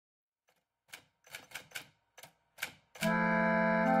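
A run of about eight sharp, typewriter-like clacks at uneven spacing, followed about three seconds in by intro music: a sustained keyboard chord that starts abruptly and holds.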